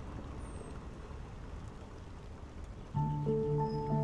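Ocean surf washing in as a steady rushing noise. About three seconds in, music starts with sustained keyboard notes.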